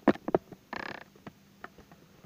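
Handling noise from a webcam being repositioned by hand: a few sharp clicks and knocks, then a short scraping rustle just before the halfway point, and a couple of fainter ticks.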